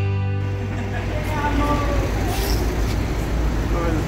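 A strummed guitar song cuts off a fraction of a second in. Steady low traffic rumble follows, with faint voices.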